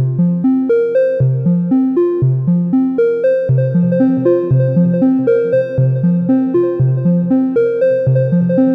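Software modular synth (VCV Rack) voice playing a repeating melodic sequence of short plucked notes, about four a second, over a steady held tone.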